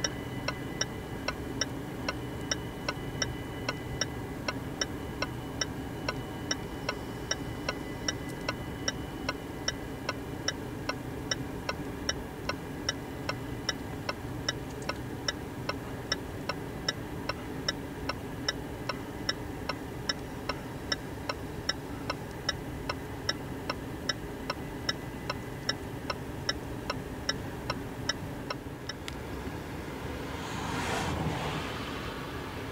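Level-crossing warning bell striking evenly, about two and a half strokes a second, over the steady low rumble of a long freight train passing. The bell strokes stop just before the end.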